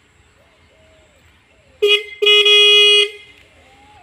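Small electric horn sounding two steady single-pitch blasts, a short toot and then a longer one of almost a second. It still works after being buried in soil for five days.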